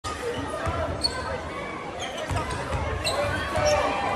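Basketball bouncing on a hardwood court in an arena, repeated low thuds, with a few short high sneaker squeaks and people's voices around it.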